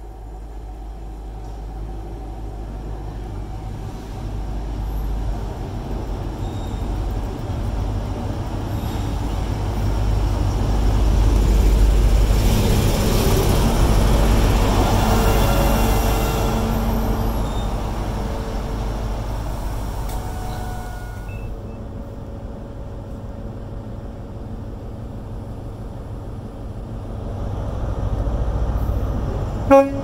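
A Class 43 HST diesel power car runs along the platform. Its engine and wheel rumble build to their loudest as the power car passes close by and then fade. Right at the end come two short horn toots.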